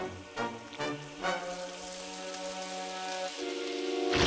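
Cartoon fizzing and hissing from hair-removal cream eating away at feathers, swelling steadily louder over held music notes. A few short music notes come first.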